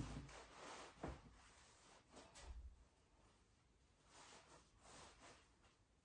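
Near silence with faint handling sounds: a soft knock at the start and another about a second in, then faint fabric rustling as a baby nest is arranged in a wooden crib.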